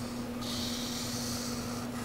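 Felt-tip marker drawn across paper: one hissy stroke starts about half a second in and lasts about a second and a half, over a steady low hum.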